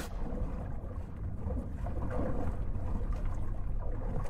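Muffled underwater rumble of churning water, a low dull roar with the high end cut away, with faint bubble ticks: the sound of being held under after a surfing wipeout.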